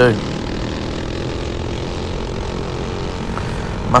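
Predator 212 single-cylinder four-stroke kart engine running flat out at a steady pitch, bumping its governor, with wind rush over the onboard microphone.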